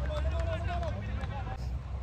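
A man's drawn-out call across the field, held for under a second near the start, with a few fainter voice fragments after it, over a steady low rumble.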